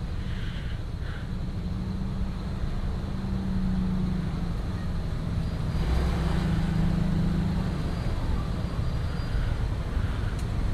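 Vehicle engines idling in stopped traffic: a steady low engine hum, with a louder swell of passing-vehicle noise a little past the middle.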